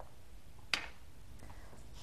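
A single short, light tap or knock about a third of the way in, fading quickly, over a steady low background of kitchen room tone while seasoning is added to a sour cream mixture.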